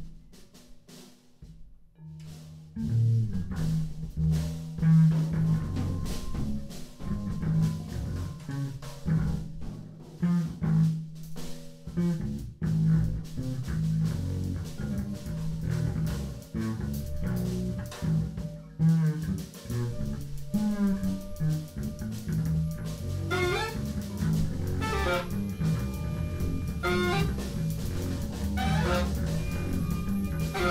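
Free-improvised jazz played live on bass guitar and drum kit, entering after a quiet first couple of seconds. In the second half a wind instrument joins with wavering, sliding high lines.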